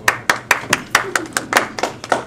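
Audience clapping after a speaker finishes, with distinct claps at about four to five a second and a voice briefly heard among them.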